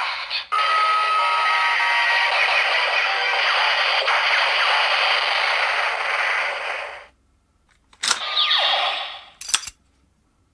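Electronic finisher sound effect from a Kamen Rider Zero-One DX toy weapon's speaker after its "Shining Storm Blast" call: a long, dense firing blast lasting about six seconds. After a short pause there is a brief falling whoosh and a click.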